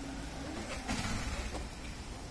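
Road traffic noise on a hill road: a motor vehicle's engine rumbling, rising briefly about a second in, over steady outdoor hiss.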